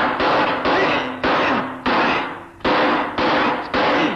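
Film fight sound effects of blows and weapon strikes landing in quick succession, about eight hits in four seconds, each cutting in sharply and dying away quickly.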